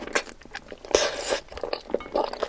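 Close-miked chewing of a spicy, sauce-covered chicken foot: wet crunching and short clicking mouth sounds, with a louder crunch about a second in.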